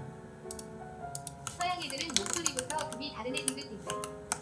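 Typing on a computer keyboard: a quick, irregular run of key clicks over soft, steady background music.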